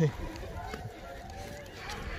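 A loud call from a voice trails off with a falling pitch right at the start, then faint, distant voices over low outdoor rumble.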